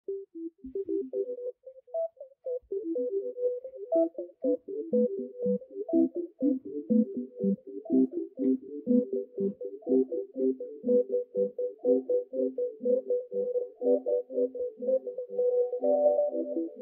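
Live electronic music: a fast, busy stream of short synthetic tones hopping between a few mid-range pitches, played on a mixer and effects pedal. It starts sparse and thickens into a continuous patter after about three seconds.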